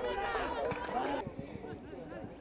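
Several voices shouting excitedly, overlapping. About a second in the sound cuts off abruptly to a quieter background with faint distant calls.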